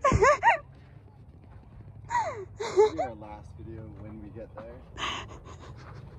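Women talking and laughing, with a breathy gasp-like laugh about five seconds in, over a low steady hum.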